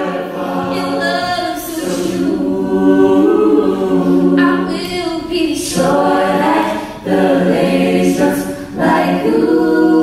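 A mixed-voice a cappella group singing held chords in close harmony, with no instruments. Each chord breaks off briefly, about seven and nine seconds in, before the voices come back in together.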